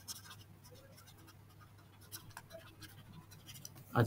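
Faint scratching and tapping of a stylus on a tablet's writing surface as a word is handwritten, in short scattered strokes.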